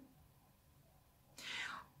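Near silence, then a short, faint in-breath from a woman about a second and a half in, just before she speaks again.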